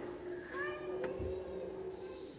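A brief high vocal sound that rises in pitch about half a second in, over a faint steady held tone, with a click and a soft low thump around the middle.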